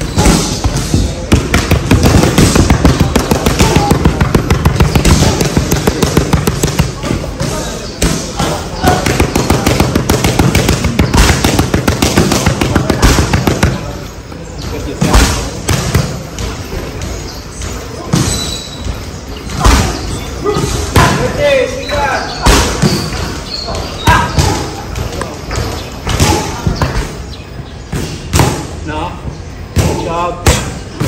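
Boxing gloves smacking focus mitts. For roughly the first half it is a fast, nearly unbroken flurry of strikes; after that come shorter combinations of sharp slaps with brief pauses between them.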